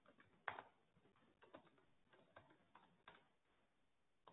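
Faint, irregular key clicks of typing on a MacBook Pro laptop keyboard, with one louder keystroke about half a second in.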